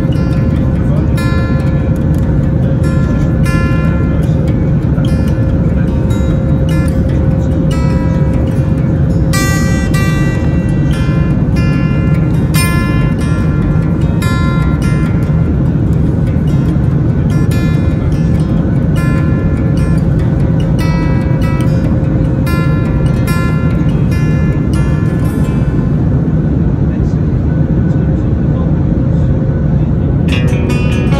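Steady low noise of a jet airliner's cabin in flight, with a steady hum on top. Over it runs music of plucked guitar-like notes, played at a steady pace.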